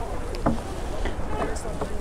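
Wind rumbling on the microphone, steady and low, with a faint short click about half a second in.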